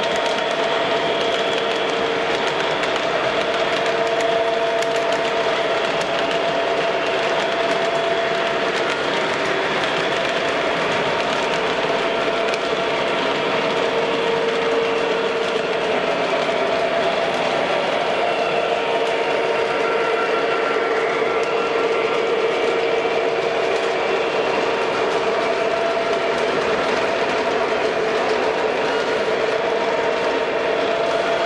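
An MTH O gauge model Norfolk Southern diesel locomotive pulling a string of freight cars along three-rail track. It makes a steady, even running sound of motor and rolling wheels with a constant hum.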